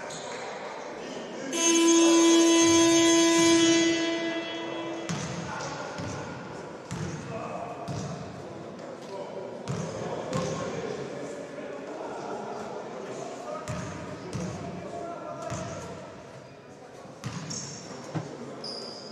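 Basketball arena buzzer sounding one steady horn tone for about three seconds, signalling the end of a timeout. After it come a basketball's bounces on the hardwood court and voices echoing in the hall.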